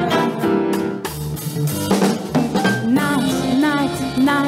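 Jazz orchestra of big band and strings playing an instrumental passage: a held ensemble chord in the first second, then the drum kit comes forward with repeated drum strokes under lighter instrumental lines.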